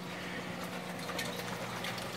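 Water running steadily down a 1.25-inch PVC Durso overflow into an aquarium sump, over a steady low hum from the pump. The overflow is barely coping with 655 gallons an hour and needs extra head pressure to push the water through.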